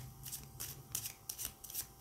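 A deck of tarot cards being shuffled by hand: a quick run of short rustling strokes, about three a second, the shuffle before the next card is drawn.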